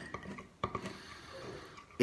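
Teaspoon stirring egg and Nutella in a drinking glass: faint scraping with light clicks of the spoon against the glass, one sharper click about half a second in.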